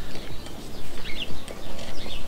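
Rustling and scratching of a hook-and-loop velcro strap and the bag's waterproof fabric being pressed and handled, in irregular bursts. A bird chirps briefly about a second in.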